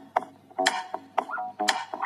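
Rhythmic clicking, about two clicks a second, each click carrying a short tone.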